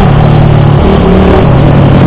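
Keeway Cafe Racer 152's single-cylinder engine running steadily at an even cruise, with road noise.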